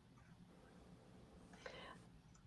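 Near silence: room tone, with a faint short sound near the end.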